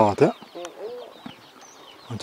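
Faint clucking of free-ranging chickens with a few thin bird chirps, after a man's voice breaks off in the first moment.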